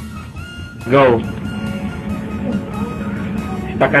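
Background music with steady held tones, a shouted "Go" about a second in, and a loud, wavering voice breaking in near the end.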